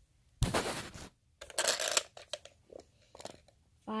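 Two short bursts of scraping, rustling handling noise, followed by a few small clicks.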